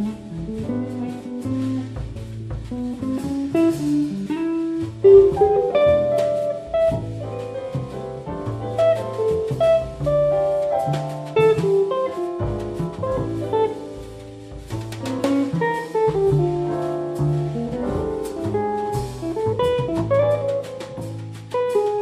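Jazz quartet playing live: electric guitar, piano, bass and drums, a busy run of melody over a walking bass line and light drumming.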